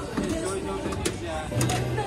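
People talking in the background, with a few sharp clicks and a low steady hum near the end.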